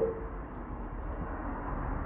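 A pause in speech holding only steady background noise: a faint low rumble and hiss, with no distinct event.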